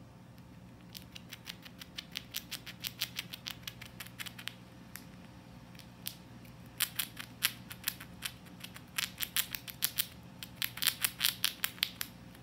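A grey squirrel gnawing and chewing a nut: runs of quick, crisp crunching clicks, several a second, in bursts with short pauses between.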